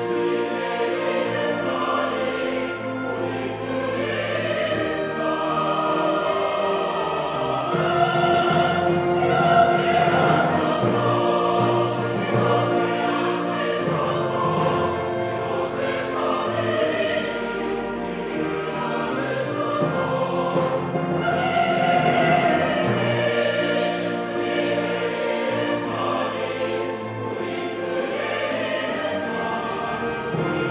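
Mixed church choir singing a Korean anthem in full sustained chords, accompanied by an orchestra of strings, flutes, timpani and piano. The music swells louder about eight seconds in and again past the twenty-second mark.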